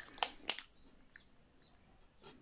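A few small sharp clicks in the first half second as a plastic lipstick tube is handled, then faint room noise.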